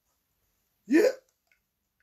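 A man's voice saying one short word, "yeah", about a second in, with a rising pitch; otherwise dead silence.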